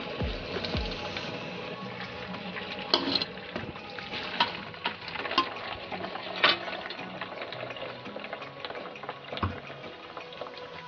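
Boiled spaghetti draining in a metal colander: water running and splashing through the holes, with scattered drips and light clicks.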